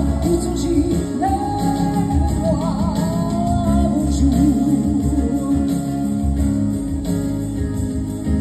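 A woman singing live into a stage microphone over instrumental accompaniment, holding long notes with vibrato.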